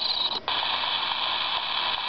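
Small speaker of a One World Soothing Sounds alarm clock: the recorded night sound breaks off in a brief gap about half a second in as the setting changes, and a steady hiss of recorded rain follows.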